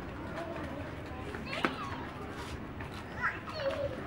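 Young children playing, with brief high calls and voices, and one sharp knock or slap about a second and a half in that is the loudest sound.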